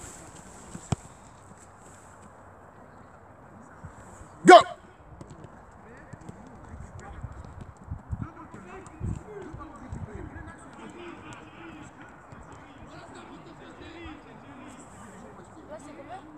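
Football being dribbled on artificial turf: a scatter of soft, low ball touches and running footsteps a few seconds after a shouted 'Go', with one sharp click about a second in.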